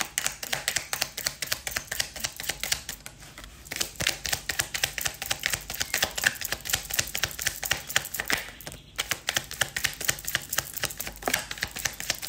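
A deck of tarot cards being shuffled by hand: a rapid, irregular run of light card clicks and slaps, easing off briefly a few seconds in.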